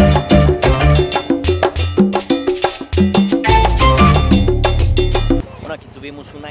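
Background music with a quick, steady percussion beat and a bass line, which cuts off suddenly about five seconds in.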